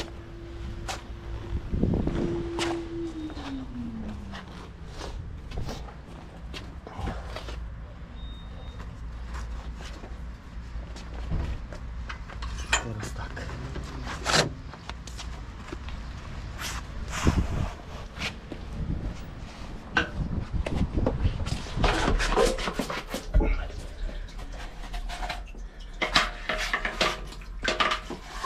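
Sewer-jetting gear being handled: scattered knocks and clicks over a steady low hum. A tone near the start slides down in pitch about three to four seconds in.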